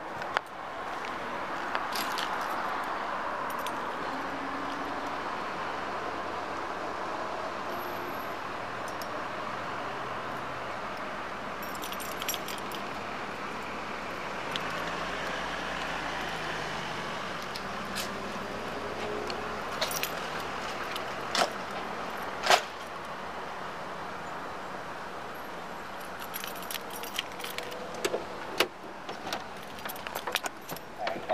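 Light metal jingling, like keys, over steady street and traffic noise, with a few sharp clicks and knocks in the second half and a quick run of them near the end.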